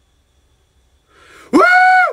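A man's loud, high-pitched wordless yell starting about one and a half seconds in. It rises sharply in pitch and is then held steady, with a short breath in just before it.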